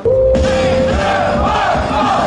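A crowd of fans shouting a cheer together over loud pop music with a steady bass beat, cutting in suddenly at full volume.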